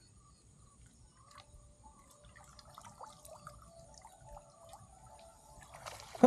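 Faint dripping and trickling of water as a cast net is drawn in by its rope and lifted from the water, rising a little near the end.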